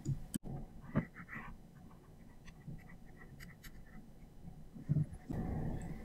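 Faint taps and scratches of a pen drawing on a tablet, with soft breathing close to the microphone.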